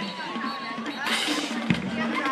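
A band playing with drums; a sharp drum hit comes near the end.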